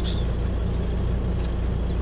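Car engine idling, heard from inside the cabin as a steady low hum.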